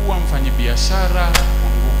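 Steady low electrical mains hum in the sound-system feed, the loudest thing heard. A faint voice sounds in the background, and there is a single sharp click about one and a half seconds in.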